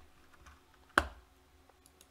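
A single sharp click at a computer about a second in, with a few much fainter clicks around it over low room tone.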